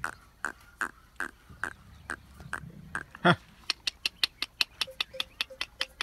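Camel neck bells clanking as the camels move, at about two strikes a second, then quickening to about five a second, with one louder clank about halfway through. A low camel grumble sounds underneath in the first half.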